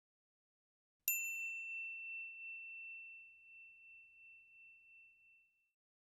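A single bell-like ding sound effect about a second in: one clear, high tone that rings and fades away over about four seconds. It marks the end of an on-screen countdown.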